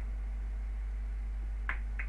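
Low steady electrical hum of the recording, with a short sharp click near the end.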